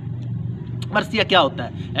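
A man talking over a steady low hum from a running motor, present throughout; his speech comes in about a second in.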